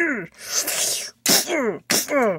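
A person's voice making mouth fight sounds for the figures: short cries that fall in pitch, about three of them, with breathy hissing whooshes between them.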